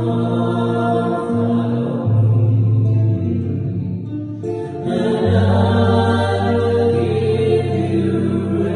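Small mixed choir singing a slow hymn with long held notes to acoustic guitar accompaniment, easing off briefly about four seconds in before swelling again.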